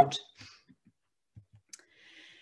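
Mostly hush after a voice trails off, with a few faint low taps and then one short, sharp click near the end: the click of advancing a presentation slide.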